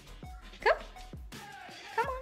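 A Shih Tzu x Papillon puppy gives one short, sharp, high yip about two-thirds of a second in, over background music with a steady beat.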